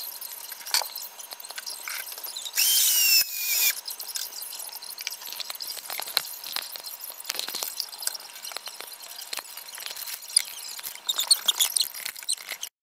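Zip-lock plastic bag of sublimating dry ice crinkling and crackling as it inflates. About three seconds in comes a loud hiss for about a second with a squeal falling in pitch, and a burst of sharp crackles comes near the end.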